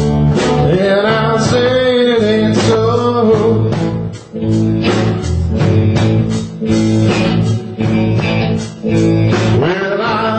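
A small live band playing a blues, led by electric guitar, with drums and a steady bass line.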